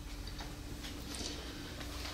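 A quiet pause in the reading: low room tone with a steady faint hum and a few faint, irregular ticks.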